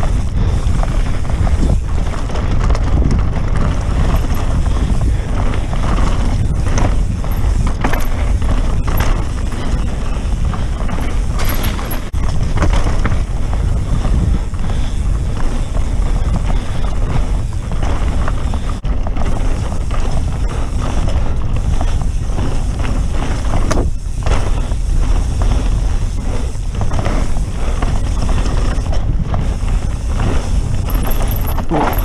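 A Santa Cruz Megatower mountain bike ridden fast down a dirt forest trail: steady rushing wind on the mic over tyre noise, with constant rattling and knocks from the chain and frame over the bumps.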